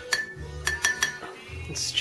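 A glass thermometer used as a stirrer clinking against the inside of a glass mason jar of honey water: about half a dozen quick clinks, each leaving a short ring.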